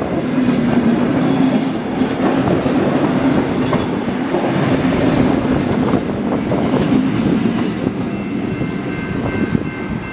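Vintage Tait electric suburban train, a wooden-bodied 'Red Rattler', running past at close range: a steady loud rumble with wheels clicking on the track, easing a little over the last couple of seconds.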